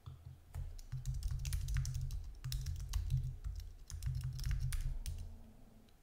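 Typing on a computer keyboard: a run of quick key clicks over a low dull thudding, with a few brief pauses, as login details are keyed in.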